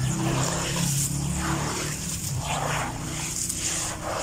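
Hands squeezing and crumbling wet, gritty sand: a gritty crunching and rustling that swells about every two-thirds of a second. A low steady hum runs underneath, strongest in the first second and a half.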